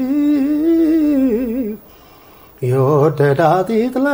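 A man singing unaccompanied, a cappella, with a wavering, ornamented melody. The voice breaks off for under a second just before the middle, then comes back on a lower note and rises again.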